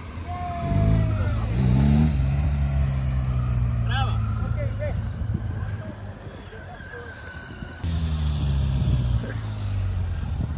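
Motorcycle engine running close by at low speed. It revs up with a rising pitch about a second in, holds a steady low note for several seconds, and fades. A fresh surge of engine sound comes in abruptly near eight seconds.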